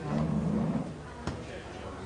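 Background chatter of a seated audience in a room, with a loud low rumble lasting under a second at the start and a single sharp click a little over a second in.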